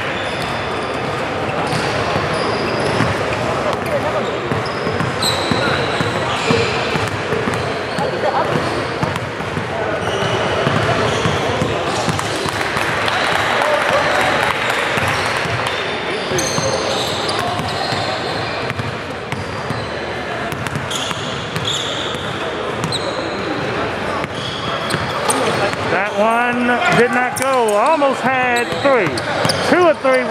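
Basketball gym ambience during free throws: chatter from players and spectators, a basketball bouncing on the hardwood floor, and short high squeaks from sneakers. Near the end, a loud voice rising and falling rides over the chatter.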